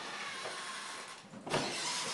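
Steady noise, then the toilet door is pushed open with a sudden knock about one and a half seconds in.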